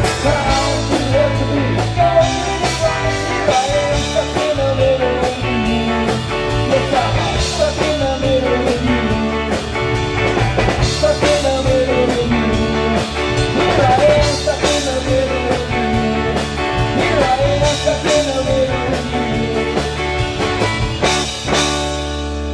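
Live rock band playing loudly, with electric guitars, bass, drum kit, keyboard and saxophone. The song draws to a close near the end.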